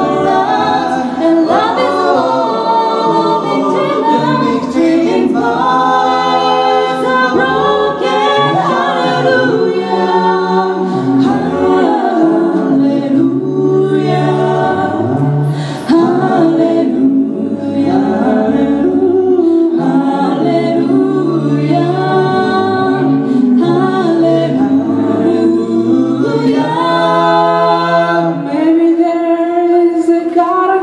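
A five-voice mixed a cappella group singing in harmony, with a low sung bass line holding long notes under close vocal chords and a lead melody.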